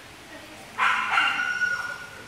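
A dog gives one loud, high yelping whine lasting about a second, starting a little before the middle.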